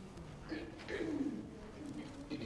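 Faint voice in the room, off the microphone: a couple of short sounds about half a second in, the loudest one falling in pitch.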